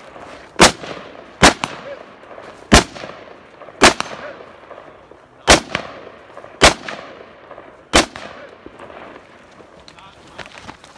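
A 5.56 Golani rifle (a Galil clone) firing seven single shots, roughly a second or more apart, each followed by a short echo. The shots stop about eight seconds in.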